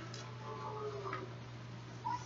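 Faint handling noise: a couple of soft clicks as small items and papers are moved about, over a steady low hum.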